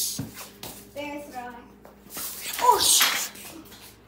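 Children's voices: a few words about a second in, then a loud shout nearly three seconds in, its pitch falling.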